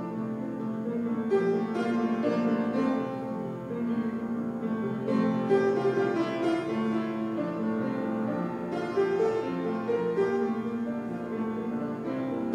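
Piano music played live.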